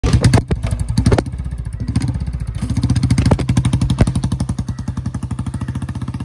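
Royal Enfield Bullet's single-cylinder four-stroke engine: a few sharp throttle blips in the first second, then the exhaust settles into a steady, rapid thump as the bike pulls away.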